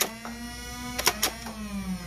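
Nerf Ravenfire's battery-driven flywheels humming at a steady pitch while darts are fired, with a sharp crack at the start and two more close together about a second in. Near the end the hum sags in pitch as the flywheels begin to spin down.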